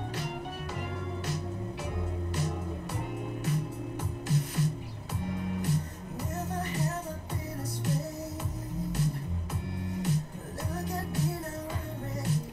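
Indonesian pop song playing: a steady beat with deep bass pulses and crisp percussion, with a voice singing a melody from about halfway through.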